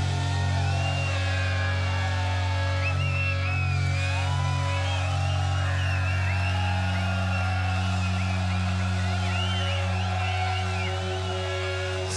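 A live stoner-rock band playing a held low bass drone, with guitar lines bending and wavering above it.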